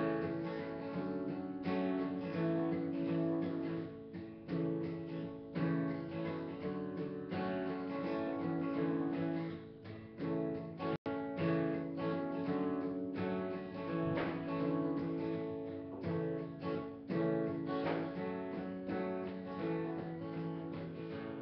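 Steel-string acoustic guitar strummed live, its chords ringing on between strokes, with no voice over it. The sound drops out for an instant about eleven seconds in.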